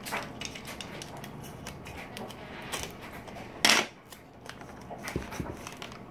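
Glossy catalog paper being handled and folded around a small wax sample: soft rustling with faint ticks, one louder crinkle a little past halfway, and a couple of light knocks on the table near the end.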